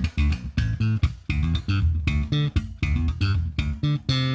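Five-string electric bass with single-coil pickups played slap-style through a compressed Line 6 Helix clean bass patch. It is a quick run of snappy notes, many a second, even in level and heavy in the low end.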